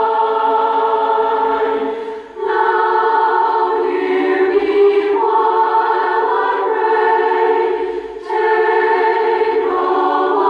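Choir singing slow, long-held chords, with two short breaks between phrases, about two seconds in and about eight seconds in.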